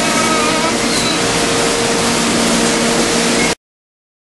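Loud, steady rushing noise with a faint steady hum underneath and a few brief high whistles, cutting off abruptly about three and a half seconds in.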